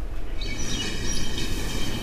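A shrill, drawn-out tone with many overtones, starting about half a second in and fading away after about a second and a half, over a steady low rumble.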